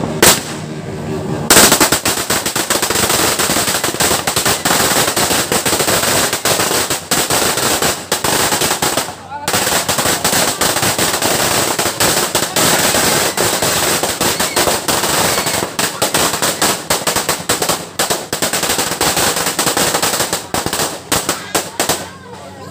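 A 500-round firecracker string going off in a rapid, continuous crackle of bangs. It starts about a second and a half in and runs for about twenty seconds, with a brief pause about nine seconds in.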